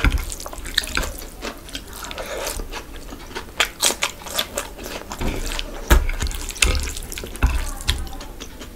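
Close-miked wet squelching of fingers mixing rice into thick curry gravy, then chewing a handful of curry rice with cucumber: sharp wet clicks and mouth smacks repeated throughout.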